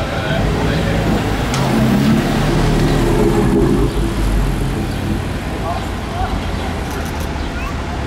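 BMW M4 GTS's twin-turbo straight-six running at low revs as the car rolls slowly past close by. It is loudest about two to four seconds in, then eases off as it moves away.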